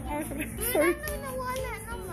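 A young child's high-pitched voice, with music playing in the background.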